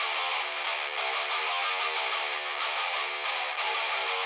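Distorted electric guitar playing a short riff, thin-sounding with the bass cut away, holding an even level throughout.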